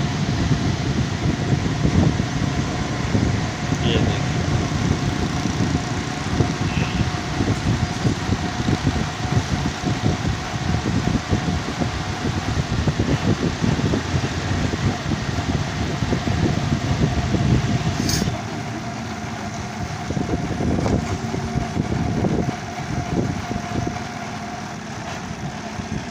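Motor trike engine running with road noise while riding along, loud and steady, dropping a little in level about two-thirds of the way through.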